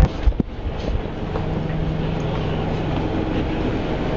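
Steady drone of a moving vehicle heard from inside the cabin, with a low steady hum setting in after about a second. A brief burst of outdoor wind noise at the very start cuts off abruptly.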